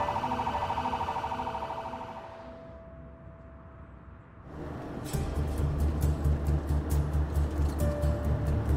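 Ambulance siren on a rapid yelp, fading away over the first two or three seconds. About five seconds in, background music with a steady beat starts.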